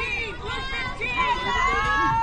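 Several girls' high voices shouting and chanting together in overlapping, drawn-out calls: a softball team cheer.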